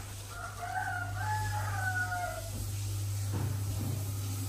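A rooster crowing once, one long call of about two seconds, over a steady low hum.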